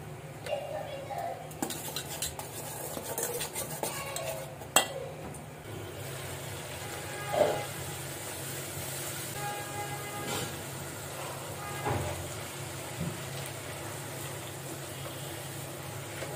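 A utensil clinking and scraping in an aluminium bowl as spices and salt are worked into gram flour, with one sharp clink about five seconds in. Then a spatula stirring and scraping chickpea curry in a non-stick pan, with a low sizzle and a few louder scrapes.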